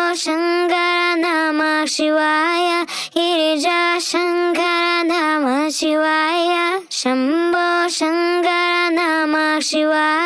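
A sung vocal sample from the Mantra Vocals pack, transposed up three semitones into F, played back from a Groove Agent SE pad: long held notes, mostly on one pitch with a brief dip in the middle, broken by short pauses about three and seven seconds in.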